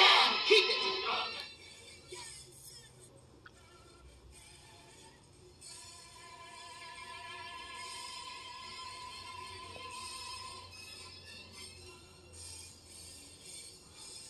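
Music playing from a vinyl record on a turntable. It is louder for the first second or two, then soft, with one long held note in the middle.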